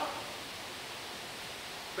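Steady, even hiss of room tone in a classroom, with no other sound.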